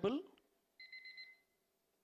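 A brief electronic ringing trill at one high pitch, pulsing rapidly, about half a second long and starting about a second in.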